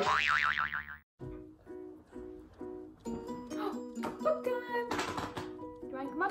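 A short wobbling 'boing' sound effect, then, after a brief gap about a second in, light background music with repeated short notes.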